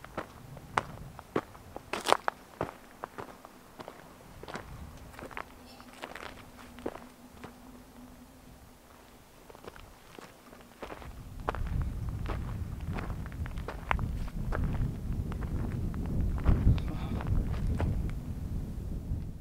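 Footsteps on loose, stony desert ground: irregular short crunches throughout. From a little past halfway, wind rumbles on the microphone.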